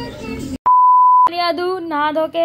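A short electronic beep of one steady pitch, about half a second long and loud, dubbed in at an edit between two clips. It begins just after a brief silence about half a second in and is followed by speech.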